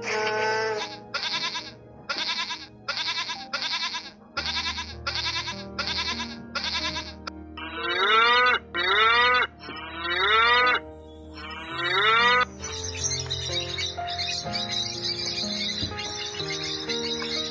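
A calf bawling four times, each a loud rising call about a second long, over background music with steady held notes. Before it comes a quick run of short repeated animal calls, about two a second, and near the end high bird chatter takes over.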